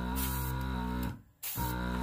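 Small airbrush compressor motor running with a steady hum at its low pressure setting. It cuts out about a second in, restarts half a second later and runs briefly again.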